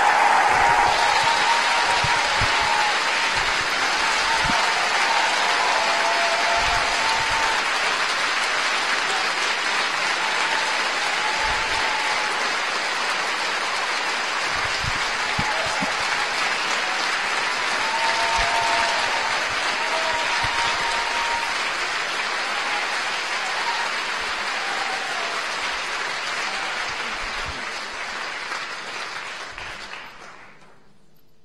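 Theatre audience applauding, starting suddenly as the music ends and dying away near the end, with a few voices cheering above the clapping.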